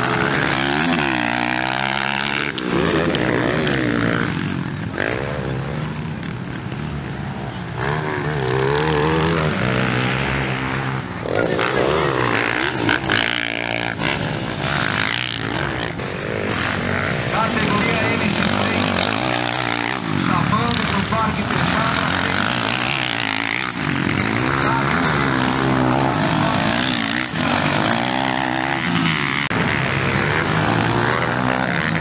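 Motocross bikes racing on a dirt track, their engines revving hard and dropping off again and again as riders accelerate out of turns and shift through the gears, with several bikes overlapping.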